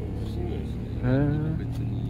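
Motorcycle engine idling steadily, a low even hum.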